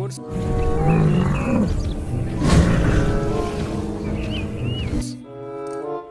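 Battery-operated toy dinosaur playing a recorded roar through its small speaker. One long growling roar starts suddenly, is loudest about halfway through and cuts off abruptly about a second before the end, over background music.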